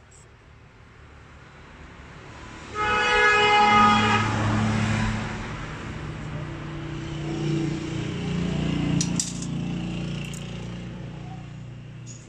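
A vehicle horn blares once for about a second and a half, about three seconds in, followed by the low rumble of a motor vehicle's engine.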